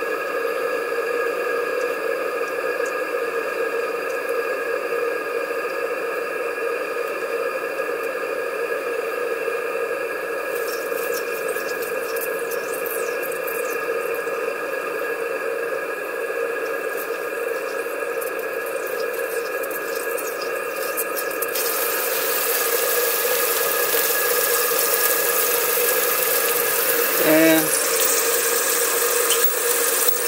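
Live-steam model boiler and Maxwell Hemmens Max 11 steam engine running at low pressure (about 30 psi), giving a steady hiss and hum that the owner calls quite loud. About two-thirds of the way through, a louder hiss of steam breaks in as the steam whistle is tried: it hisses and is nearly working, but does not yet sing at this pressure.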